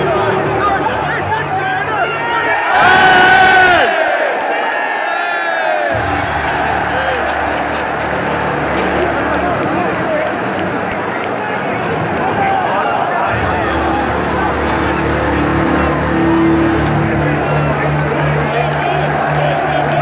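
Football stadium crowd noise: thousands of fans cheering and chanting. About three seconds in there is a loud call close by, its pitch rising and falling.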